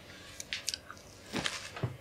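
Potato crisps being crunched while chewing: a few scattered crisp crunches, the loudest about one and a half seconds in.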